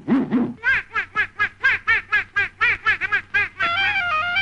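A cartoon character's voice laughing in a rapid string of short ha-ha bursts, about five a second, cut off near the end by a few stepping woodwind notes of music.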